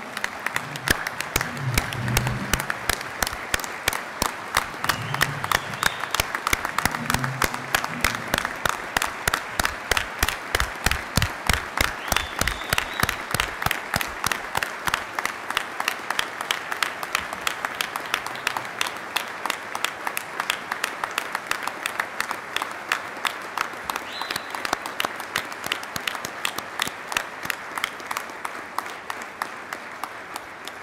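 Large audience applauding, with a steady beat of claps about three a second, easing off slightly near the end.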